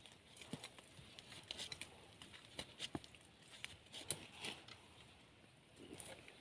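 Faint, irregular scrapes, ticks and rustling of hand work in soil, stones and dry leaves around the base of a dug-up tree stump.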